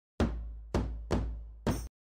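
Four heavy, sudden hits with a deep low end, each dying away over about half a second; the fourth is cut off abruptly. An edited intro impact effect over the opening title graphic.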